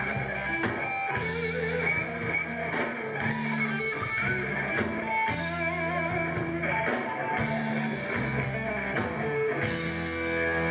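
Live punk rock band playing: distorted electric guitars holding and changing chords over bass and a drum kit.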